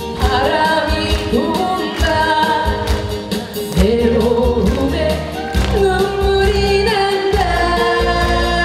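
A woman singing a Korean popular song live into a microphone over loud musical accompaniment with a steady beat and bass.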